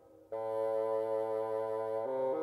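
A military wind band, silent for a brief moment at the start, then sounding one steady chord held in the brass and winds.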